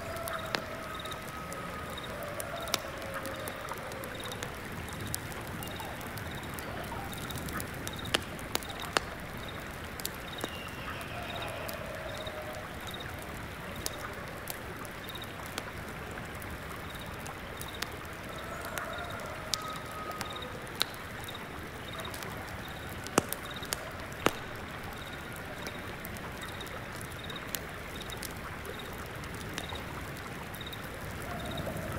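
Steady flowing stream water with scattered sharp crackles from an incense burner's embers. A single insect chirps at a regular pace, high and faint, throughout, and a few short low bird calls come now and then.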